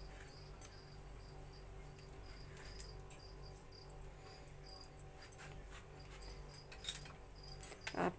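Faint scraping of a silicone spatula spreading mashed potato onto a slice of bread, with a few soft scrapes in the second half. Underneath are a steady low hum and a faint high chirp that repeats a few times a second.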